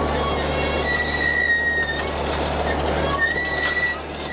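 Barbed wire dispenser running, with a steady low machine hum and noise, while the wire passing over its metal rollers gives a high, thin squeal on and off: about a second in for a second, and again near the end.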